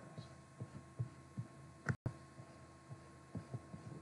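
Low-level steady electrical hum with a few short, soft low thumps spread through it. The sound cuts out for an instant about halfway, and a couple of quiet spoken words come just before that.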